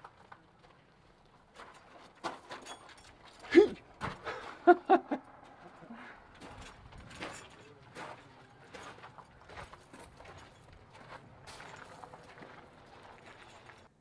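Footsteps on a gravel path, slow and irregular, after a few short bursts of voice about three and a half to five seconds in.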